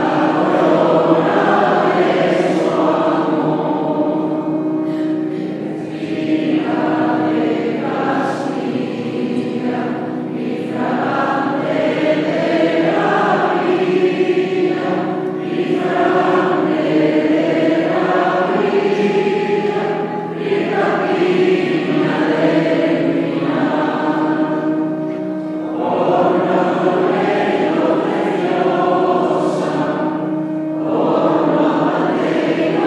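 Mixed church choir of men and women singing a sacred hymn in held chords, phrase by phrase.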